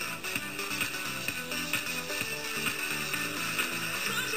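Music with a steady beat of repeated pitched notes.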